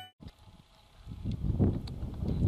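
Near silence for about a second, then low, uneven wind rumble on the microphone building up outdoors.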